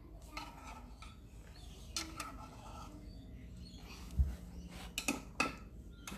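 A metal spoon clinking and scraping against a measuring jug and a metal muffin tin as egg mixture is spooned into the cups: a few light clicks, a low thump about four seconds in, and sharper clinks near the end.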